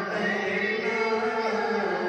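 A young man's voice singing a naat, an Urdu devotional poem to the Prophet, into a handheld microphone, drawing out long held notes that bend slowly between pitches.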